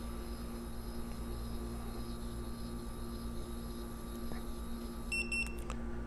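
PCE-RT 2300 profilometer's motorized sensor drawing its diamond stylus across a roughness standard, heard as a faint steady electric hum. About five seconds in, the tester gives a brief series of high beeps as the measurement finishes.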